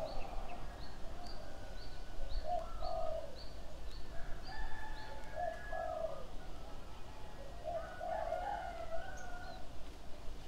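Birds calling: a high, short chirp repeated evenly about three times a second through the first half, and lower cooing call phrases three times, near the start, the middle and the end.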